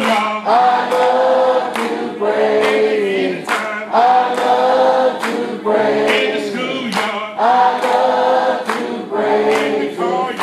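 Gospel singing: a man leads into a microphone while several voices sing with him in long held phrases of one to two seconds each.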